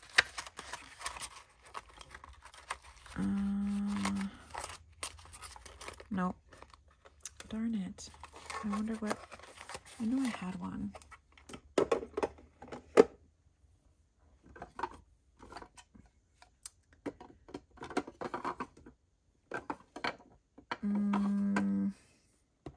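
Paper and card pieces handled and shuffled by hand, with scattered rustles and light taps. Twice a steady buzzing tone lasts about a second, once a few seconds in and again at the very end, and short wordless murmurs come in between.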